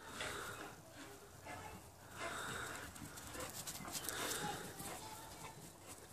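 Faint dog panting: a few soft, breathy huffs with short gaps between them.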